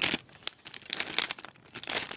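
A crinkly plastic blind bag crackling irregularly in the hands as it is turned over and handled.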